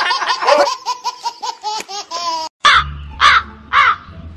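A quick run of short high laughing notes, then after a sudden break three loud crow caws about half a second apart, dropped in as a comic sound effect.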